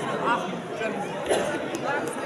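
Indistinct chatter of several voices talking at once, with no other distinct sound.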